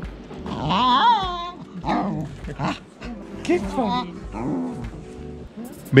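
A dog vocalizing in play: a run of growls and whining yelps that rise and fall in pitch, the loudest about a second in.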